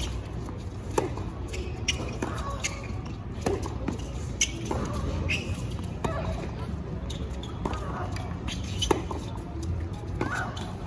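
Tennis rally: the ball struck back and forth by rackets, sharp pops roughly every second, over a low murmur from the crowd. The loudest hits come about a second in and near the end.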